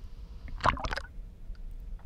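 Spring water sloshing and splashing around a camera at the surface: a short cluster of splashes about half a second in, over a low steady rumble.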